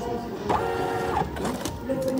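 A small receipt printer running briefly: a click about half a second in, then a steady whir for about two-thirds of a second.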